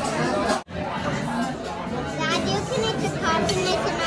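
Busy restaurant dining-room chatter with a child talking at the table. The sound cuts out for an instant under a second in.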